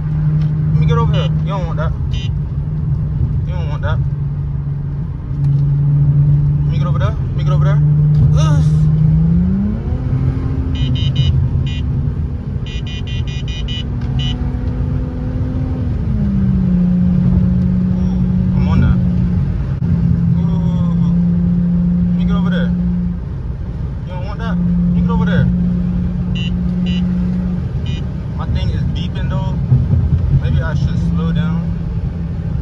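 Infiniti G35x's 3.5-litre V6 heard from inside the cabin while driving, a steady drone that climbs in pitch about nine seconds in, holds, and drops back about sixteen seconds in, with voices on and off over it.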